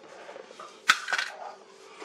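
A small plastic box set down on a laminate worktop: one sharp clack about a second in, then a couple of lighter clicks and soft handling noise.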